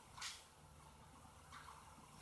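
Near silence: room tone, with a faint computer-keyboard keystroke about a quarter second in and a fainter one near the end.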